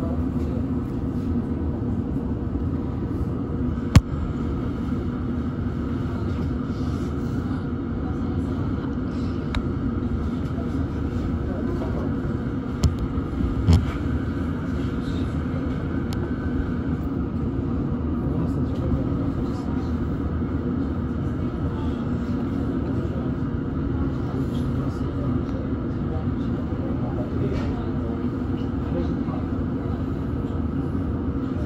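Steady hum inside a standing London Underground District line train carriage, with one sharp click about four seconds in and a couple of knocks around thirteen to fourteen seconds.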